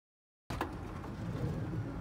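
Dead silence for the first half second, then the power sliding door of a 2012 Nissan Quest minivan opening under its motor: a steady, even hum of the door drive.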